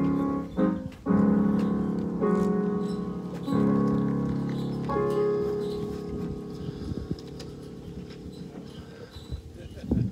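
Electronic keyboard playing slow, held chords in a piano-like voice, the chord changing every second or so, then a final chord left to fade away over the last few seconds.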